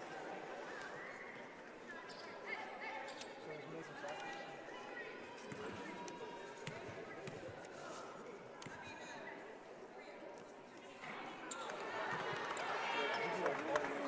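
Quiet gym ambience at a free throw: scattered voices of fans and players, with a few sharp knocks of a basketball bounced on the wooden court. The crowd noise grows louder over the last few seconds.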